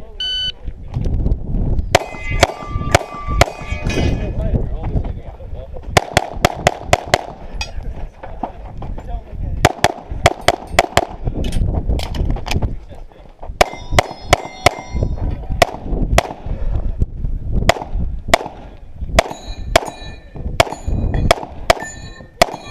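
A short electronic shot-timer beep, then a stage of pistol fire: shots in quick pairs and strings with short pauses between them. Several strings are followed by the ringing clang of steel targets being hit.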